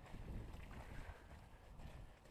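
Faint footsteps on a dirt road, a few soft thumps, with wind rumbling on the microphone.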